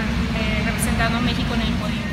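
A woman speaking in short phrases over a loud, steady low rumble of background noise.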